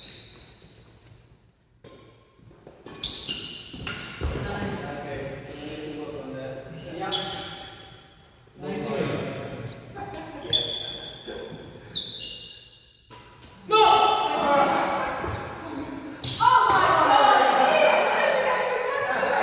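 Badminton rally in a reverberant sports hall: rackets strike the shuttlecock over and over, each hit a sharp crack, some with a short high ping, along with footfalls on the wooden court. Players' voices get louder near the end.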